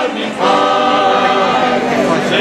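A group of people singing together, unaccompanied, with a short break just after the start and then one long held note.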